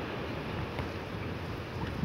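Wind buffeting the microphone, a steady low rush.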